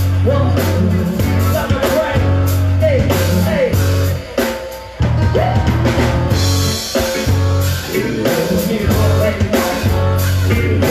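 Live rock band playing with drum kit, electric guitars and bass guitar under a male lead singer. The band drops out for a short break just before halfway, then comes straight back in.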